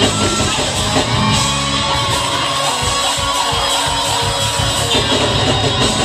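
Live church band kicking in with an up-tempo gospel groove right at the start, heavy on bass and drums, with voices from the choir and congregation shouting over it.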